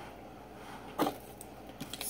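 A kitchen knife knocks once on a plastic cutting board about a second in, followed by a couple of lighter taps, while garlic is being cut.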